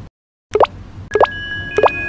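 End-screen sound effects: three quick rising 'bloop' pops about half a second apart, with bell-like chime tones that start ringing after the second pop and hold on.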